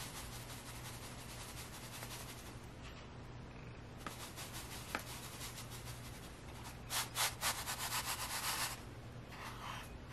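Fine silica gel crystals sliding and trickling out of a tilted dish into a plastic tub: a faint, steady gritty hiss, with a louder, crackly rush of pouring from about seven to nine seconds in.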